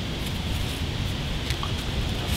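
Steady wind noise on the microphone, with a couple of faint rustles and ticks from a rope being drawn through a knot by hand.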